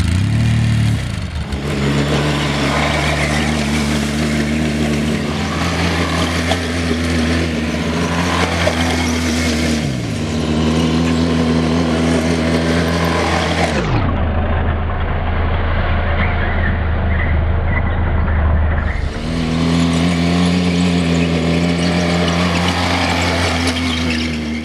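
ATV engine running steadily under load as it pulls a disc plow through soft, wet soil. The engine note drops twice around the middle.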